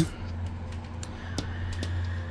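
Steady low hum with a couple of faint, short clicks in the second half.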